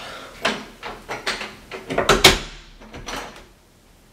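Interior door being shut, with a string of knocks and clicks and one loudest bang a little past halfway as it closes and latches.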